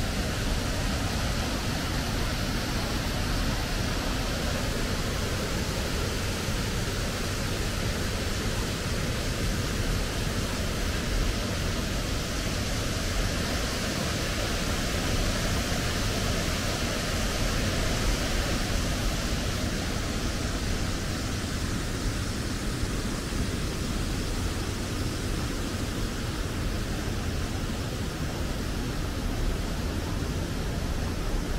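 Steady rushing of the Dubai Water Canal's bridge waterfall, a curtain of water pouring from the road bridge into the canal, swelling a little in the middle as it is passed close by, over a constant low rumble.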